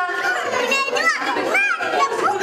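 Small children playing and calling out, with high-pitched voices that rise and fall, twice standing out over general chatter.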